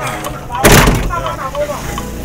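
A vehicle door slams shut once, loudly, about two-thirds of a second in, followed by a man's voice.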